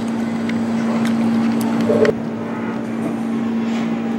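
Steady machine hum on one constant low note, with a few faint clicks and a brief short sound about two seconds in.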